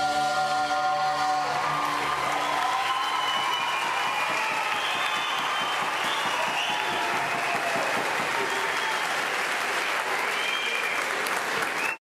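A male and female duet holds the song's final note over the band for about the first two seconds, then a theatre audience applauds and cheers steadily. The applause cuts off abruptly at the very end.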